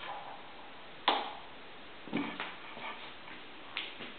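Lamp switch clicked on, a sharp click about a second in, followed by a few softer knocks from handling the lamp and another short click near the end.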